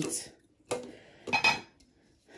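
Small metal scissors snipping paper wrapped on a metal tin: a sharp click about two-thirds of a second in, then a quick cluster of clicks with a slight metallic ring about a second and a half in.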